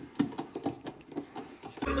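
Irregular sharp clicks, a few a second, of hand tools and metal fittings being worked while a subwoofer amplifier's ground wire is fastened to the car body. The car's sound system comes on with bass-heavy music right at the end.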